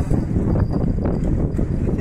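Wind rumbling and buffeting on the microphone, with choppy sea water sloshing against a concrete jetty.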